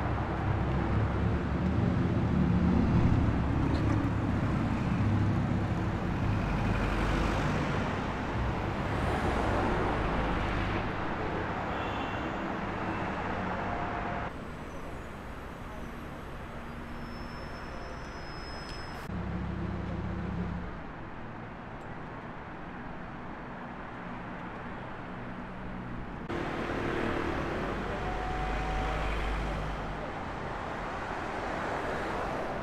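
City street traffic: a car passes close by at the start with a loud low engine and road noise, then general traffic continues more quietly. The background changes abruptly several times.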